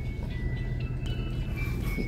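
Simple electronic tune of thin, high, held notes stepping from pitch to pitch, playing from a child's learning tablet, over the steady low hum of a car cabin.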